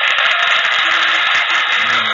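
A loud, steady burst of hissing static with a faint crackle, which cuts off abruptly about two seconds in.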